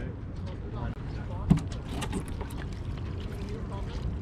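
Steady wind rumble on the microphone with light water splashes and faint voices. One sharp thump about one and a half seconds in, as the rider jumps onto the hydrofoil board launched from the dock.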